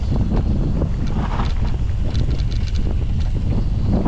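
Wind rushing over the microphone of a camera on a mountain bike riding down a dirt trail, a steady loud rumble, with scattered small rattles and clicks from the bike jolting over the bumpy ground.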